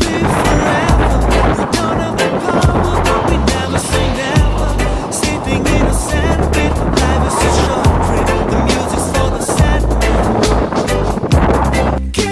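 Wind buffeting a phone microphone and the rolling noise of a bicycle ride on a concrete road, a steady rush with low rumbles, under background music; it ends abruptly near the end.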